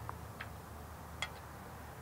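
Three faint clicks and taps as an end cap is fitted against the shade housing. The loudest comes about a second in.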